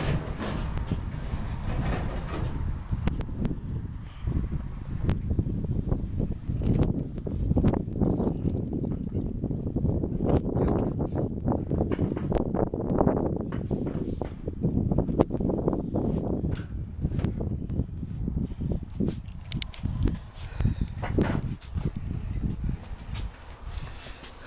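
Irregular knocks, thumps and rustling of items being moved about inside a corrugated-metal storage unit, over a steady low rumble.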